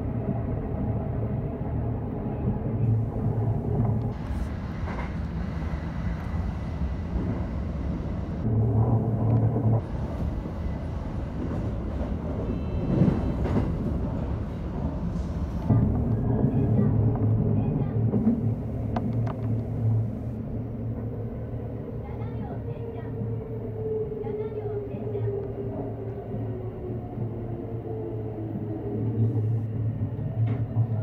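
Electric commuter train running, heard from inside the front car: a steady rumble of wheels on rail with a low motor hum. In the second half a motor whine falls in pitch as the train slows into a station.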